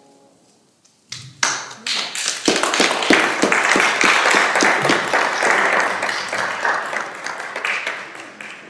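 The last piano note dies away, then a congregation starts clapping about a second in, quickly building to steady applause that begins to thin near the end.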